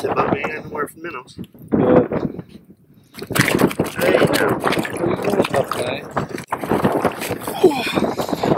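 Indistinct voices talking, with a short pause a little after two seconds in.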